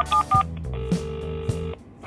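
Phone keypad tones beeping in quick pairs as a number is dialled, then a steady low ringing tone for about a second as the call rings through, over background music with a beat.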